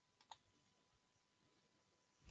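Near silence broken by two faint computer mouse clicks in quick succession, a moment in.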